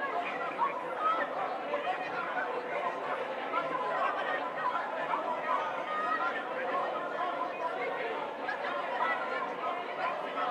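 A congregation praying aloud all at once: many overlapping voices in a steady babble, with no single voice standing out.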